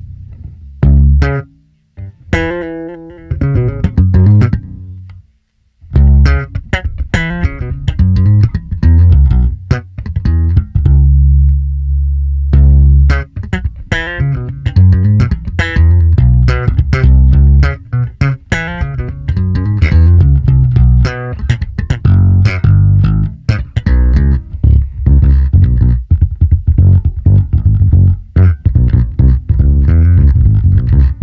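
Electric bass played with the fingers through an Ampeg SVT-style preamp with an SVT 4x10-with-tweeter cabinet simulation. It opens with a few separate plucked notes and short pauses, holds one low note a little before halfway, then runs into a busy, continuous line.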